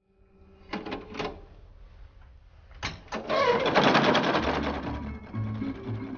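A few sharp clicks, then a fast mechanical clattering about three seconds in, over music with low steady notes.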